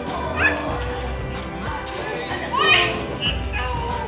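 Background music playing, with a baby's high rising squeals of delight twice: briefly about half a second in and more loudly just under three seconds in.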